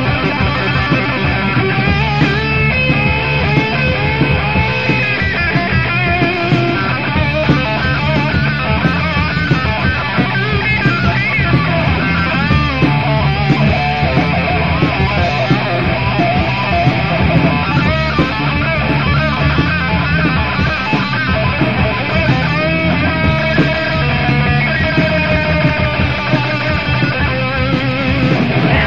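Heavy metal band playing an instrumental passage: distorted electric guitars over bass and drums, with a lead guitar line bending and wavering in pitch. The 1984 rehearsal-room demo-tape recording sounds dull, lacking its top end.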